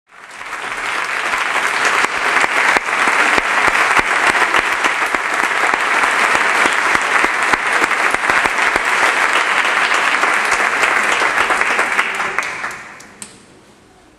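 Audience applause from a full house, swelling over the first couple of seconds, holding steady and loud, then dying away shortly before the end, with one last sharp clap.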